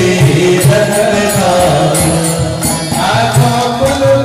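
Devotional kirtan: voices chanting a melody in a steady rhythm over hand cymbals and drum.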